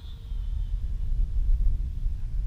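Wind buffeting the microphone of a camera mounted on a radio-controlled airplane as it takes off and climbs. It makes a low, unpitched rumble that grows louder about half a second in.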